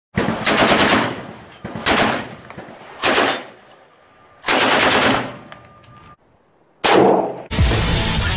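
A firearm fired in quick strings of shots: about five bursts in the first seven seconds, each a rapid run of sharp reports that rings out before the next. Loud intro music starts near the end.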